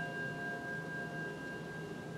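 Soft, steady ringing tones at several pitches held together without change, a sustained bell-like drone.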